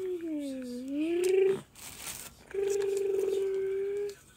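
A child's voice making truck sound effects: a hum that dips in pitch and rises again, a short hiss, then a steady held hum.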